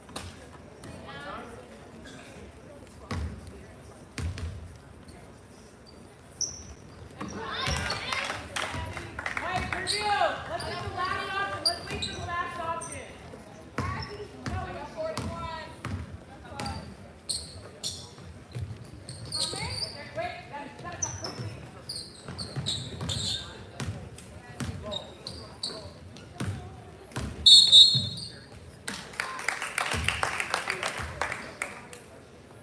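Basketball dribbling on a hardwood gym floor, with sneakers squeaking and players and spectators calling out. A short, loud referee's whistle sounds near the end.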